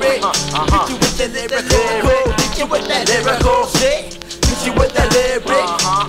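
Hip hop track: rap vocals over a beat with a steady kick drum, dropping off briefly about four seconds in.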